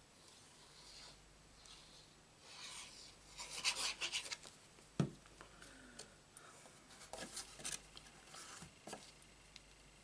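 Card and paper being handled and rubbed: short bouts of rustling and sliding, with one sharp tap about halfway through.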